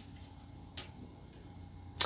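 A tarot card being turned over and laid on a cloth-covered table, with a single light click a little under a second in over faint room hum.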